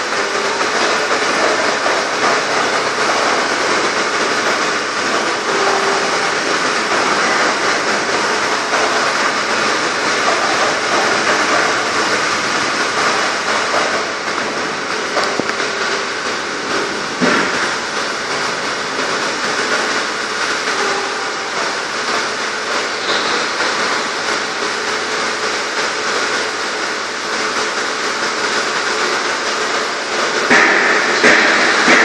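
Vibratory bowl feeder with a machined stainless-steel bowl and a linear vibrator running steadily. Tiny 2 mm by 6 mm pins make a continuous dense rattle as they are shaken along the bowl's spiral track and the feed chute, over a faint steady hum.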